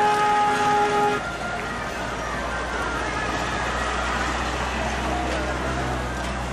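Street traffic: a long, steady horn-like note cuts off about a second in, then a low, steady motor-vehicle engine rumble continues.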